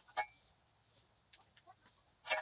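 A metal shovel digging into rocky soil: one sharp clink against stone about a quarter second in, ringing briefly, then a few faint scrapes and clicks.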